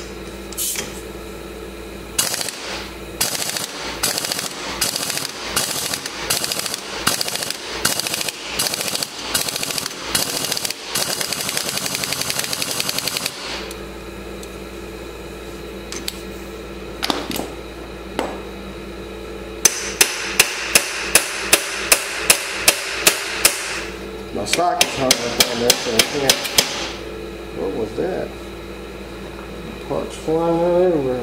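Repeated sharp metal-on-metal blows on a steel flywheel puller, working to free a stuck flywheel. The blows come in runs: a long irregular series that quickens at the end, then after a pause an even run of about three loud blows a second, and a shorter run after that.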